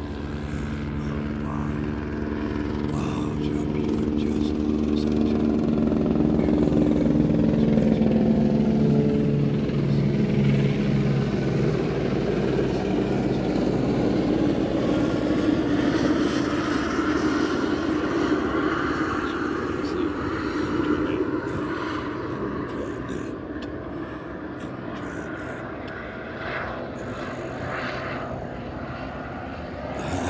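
Low-flying aircraft passing over: a steady engine drone with a stack of tones that slowly fall in pitch as it goes by, loudest about eight seconds in, then fading to a broad distant rumble.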